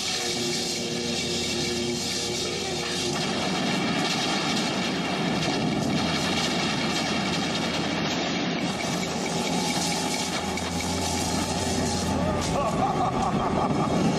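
Film action soundtrack: a steady, dense rush of noise from a lightning-and-dust blast effect, with music underneath and a few held tones in the first few seconds.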